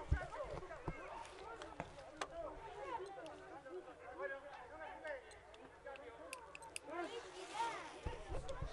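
Faint, distant voices calling out and talking on and around a football pitch, with a few soft knocks near the start.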